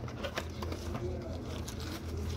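Plastic-wrapped flip phone being lifted out of its cardboard box: faint rustling of the plastic and small handling clicks over a steady low hum.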